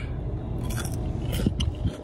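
A person biting into and chewing a Taco Bell fry, with a few short crunches and mouth clicks about halfway through.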